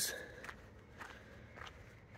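Soft footsteps on a dirt trail, a few faint crunching steps while walking.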